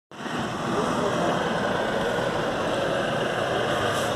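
Steady background noise with faint voices under it.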